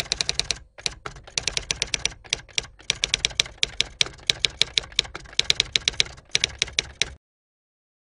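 Rapid typewriter keystrokes clacking, several strokes a second with a few brief pauses, cutting off suddenly about seven seconds in: a typing sound effect.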